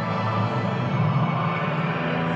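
Pre-match anthem: slow, majestic orchestral music with sustained held chords, played in the stadium.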